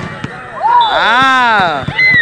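A loud, drawn-out shout whose pitch rises and then falls, starting about half a second in and lasting over a second, followed by a shorter falling cry right at the end; a few faint knocks lie underneath.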